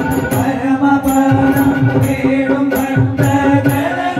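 A devotional bhajan sung by a group of men into microphones, over keyboard accompaniment with a steady held drone. Small hand cymbals and a drum keep a steady beat.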